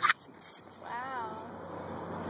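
A brief wavering vocal sound, about half a second long, about a second in, followed by a steady rushing background noise.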